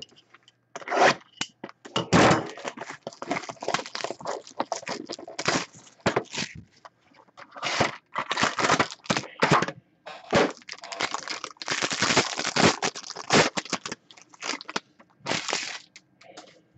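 Plastic wrap on a 2012-13 Limited hockey card box being cut and torn off, crackling in irregular bursts, then the cardboard box being opened and the card stack slid out.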